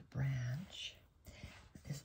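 A woman's voice speaking softly: a short phrase near the start, followed by fainter breathy, whispered sounds.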